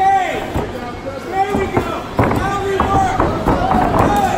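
Several voices shouting over one another, with a few sharp thuds as the fighters grapple against the cage and go down to the mat.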